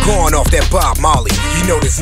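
Hip hop track: a steady, bass-heavy beat with vocals over it.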